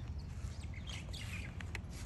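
Small birds chirping in a few short, pitch-bending calls over a low, steady outdoor rumble, with a single click near the end.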